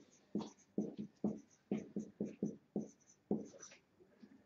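Marker pen writing on a whiteboard: a dozen or so short strokes in quick succession as a line of figures is written out.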